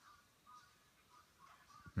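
Faint singing voice in the background, heard only as scattered short tones over near silence.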